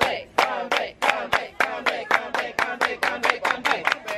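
Hands clapping, the claps coming faster and faster until they run at about seven a second.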